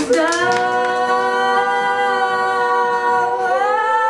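Two women singing one long held note together, almost unaccompanied, the guitar strumming having dropped away; about three and a half seconds in, the note steps up in pitch and is held again.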